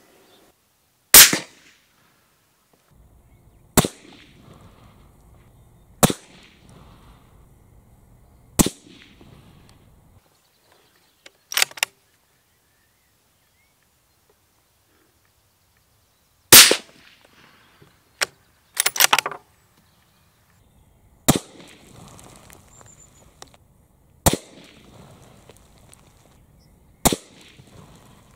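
Moderated Benelli Lupo bolt-action rifle in 6.5 Creedmoor fired repeatedly from a bench: a string of sharp reports about two and a half seconds apart, two of them much louder than the rest. Faint handling noise sits between them, with a silent stretch of about four seconds midway.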